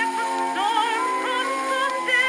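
A woman singing a sentimental ballad with wide vibrato, from a 1913 phonograph recording; the sound is thin, with no bass at all. She holds one note, then starts a new phrase about half a second in and steps up in pitch twice.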